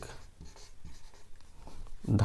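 Marker pen writing on a whiteboard: a run of short, faint strokes.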